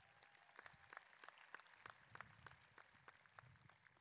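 Faint, scattered applause: a small crowd clapping in sparse, irregular claps.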